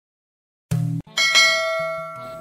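Bell sound effect: a short low hit just before a second in, then a bell strike ringing out with many clear overtones and slowly fading.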